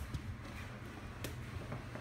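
Quiet room tone with a steady low hum, broken by a few faint clicks or knocks.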